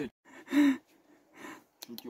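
A person's short gasp-like vocal exclamation about half a second in, followed by a fainter breathy sound and two brief clicks near the end.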